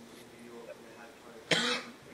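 A person coughs once, loudly and briefly, about one and a half seconds in, over faint murmuring voices.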